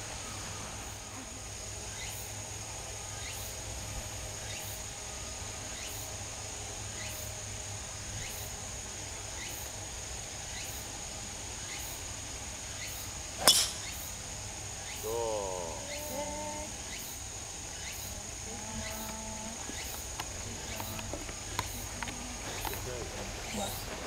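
Driver striking a golf ball off the tee: one sharp crack about 13 seconds in. Under it, steady insect chirring.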